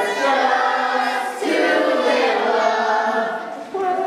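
A group of voices singing a song together, children's voices among them, with sung notes held at length. The singing cuts off sharply near the end.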